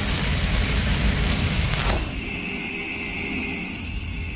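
Intro-logo sound effect: the noisy rumbling tail of a cinematic boom. About two seconds in it thins to a high held ringing tone that fades away.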